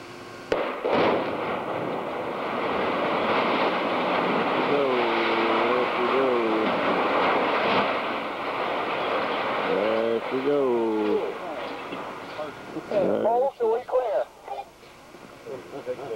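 Demolition charges go off with a sudden blast about half a second in. The refinery's 125-to-150-foot steel cat cracker tower then collapses in a long, loud rumble that lasts about eleven seconds and fades out near the end.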